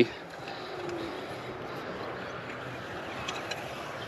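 Metal garden rake scratching through loose soil and coffee grounds, a steady soft scraping.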